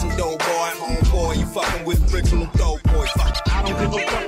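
Hip hop track: a rapper's voice over a beat with heavy, repeated bass-drum hits.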